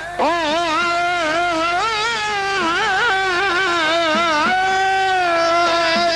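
A male singer's voice in a traditional Uzbek song, drawing out a wordless vowel with quick wavering ornaments. About four and a half seconds in he settles into one long held note.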